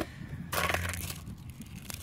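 A hand rummaging through small plastic toys and trinkets in a plastic tub: plastic rattling, scraping and crinkling, loudest for about half a second near the start.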